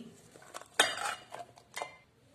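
Cut onion and garlic pieces tipped from a steel plate into a stainless-steel mixer-grinder jar, knocking on the steel three times, the loudest about a second in with a short ring.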